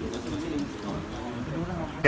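Faint voices talking in the background.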